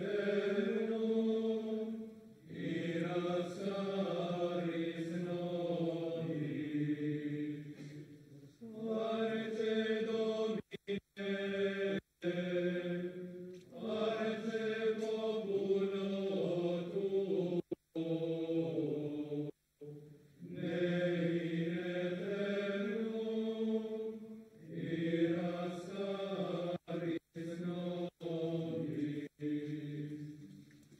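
A group of men's voices chanting a slow hymn together, in long sung phrases with short pauses for breath between them. The sound cuts out for an instant several times in the second half.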